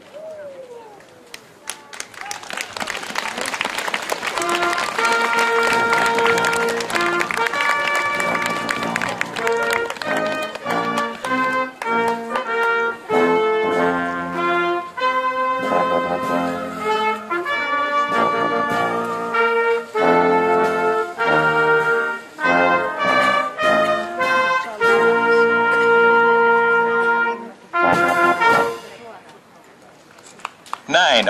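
A brass ensemble playing a fanfare: held chords broken up by short repeated notes, starting a few seconds in after a spell of crowd noise and stopping just before the end.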